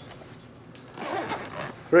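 A pause in the talk: quiet room tone for about a second, then a faint, low voice.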